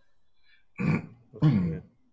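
A person clearing their throat twice, the second time louder and longer.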